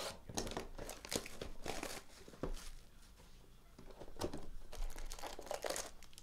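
A sealed box of trading cards being torn open and its wrapping crinkled, in two bouts of short crackles with a single light knock between them.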